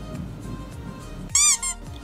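Background music that drops out about a second and a half in for a loud, high-pitched squeak sounding twice in quick succession, then resumes.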